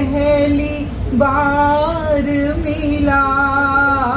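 A woman singing a Hindi love song unaccompanied, holding long, drawn-out notes with a slight waver.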